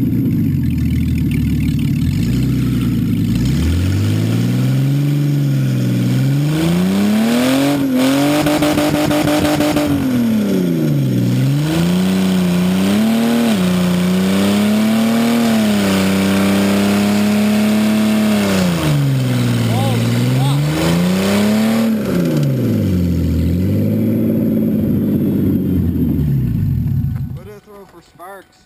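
A Mercury Sable wagon's engine revving hard over and over during a front-wheel-drive burnout on gravel, the pitch climbing and dropping again and again while the front tire spins. The revving cuts off about a second before the end.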